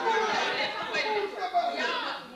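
Several people talking over one another, their words too tangled to make out.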